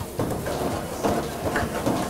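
Arroz con mariscos sizzling in a metal pan over a gas flame as a wooden spoon stirs and scrapes through it, the liquid cooking off.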